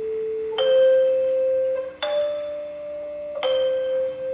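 Brass handbells rung by a four-player ensemble: three separate notes struck about a second and a half apart, each ringing on clearly until the next, over a lower bell tone held throughout.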